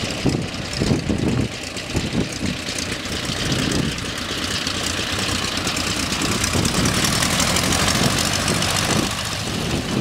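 Radial engine of a vintage biplane idling as it taxis, the propeller turning slowly. The sound gets louder and fuller from about halfway in, then eases slightly near the end.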